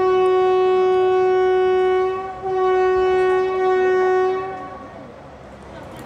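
WAP-4 electric locomotive's horn sounding a long steady blast, broken briefly a little over two seconds in, then a second long blast ending about four and a half seconds in.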